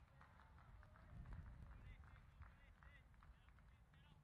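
Near silence with faint, distant voices of people talking and calling out on the field.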